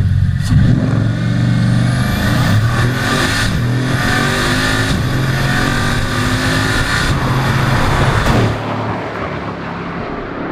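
Bugatti Chiron's quad-turbocharged 8-litre W16 engine accelerating hard. Its pitch climbs and breaks several times as it pulls through the gears. It turns quieter, heard from inside the cabin, near the end.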